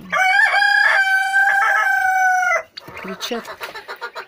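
A domestic fowl giving one long, steady high call of about two and a half seconds, followed by a few short falling calls near the end.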